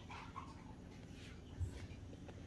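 A Russian Blue cat making a short, faint whine or grumble, followed by a soft thump about one and a half seconds in.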